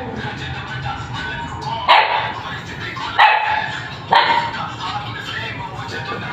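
A puppy barks three times, a second or so apart, each bark sharp and then fading.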